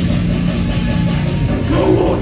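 Live heavy metal band playing loud, with drums and distorted guitars. The sound is crowd-recorded: boomy, with the low end dominant.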